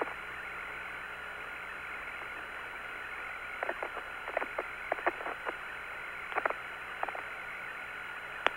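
Steady hiss of the Apollo lunar surface radio downlink, with a faint steady whine, in a gap between transmissions. Through the middle come about a dozen short, sharp clicks in an irregular cluster.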